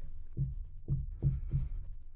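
Marker pen drawing short strokes on a glass lightboard: a run of short, dull taps, about two or three a second.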